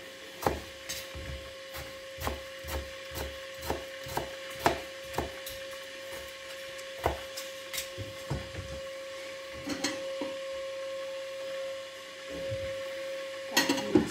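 Kitchen knife slicing tomatoes on a plastic cutting board, the blade knocking on the board about twice a second, then more sparsely after about eight seconds. A louder clatter of knocks comes near the end, over a faint steady hum.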